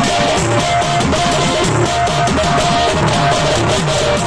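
Live Tamil folk music played loud through a PA: an electronic keyboard repeats a held note over a quick beat of hand-drum strokes that drop in pitch, about three a second.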